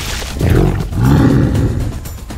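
Big-cat roar sound effect voicing an animated sabre-toothed cat: two low roars, a short one about half a second in and a longer one from about a second in.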